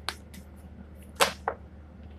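A tarot card drawn from the deck and laid down: one short, sharp swish a little past halfway, followed by a fainter one, with a few soft card ticks before.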